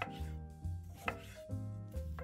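Chef's knife slicing through a tomato onto a wooden cutting board: two cuts about a second apart, the second the louder. Background music plays throughout.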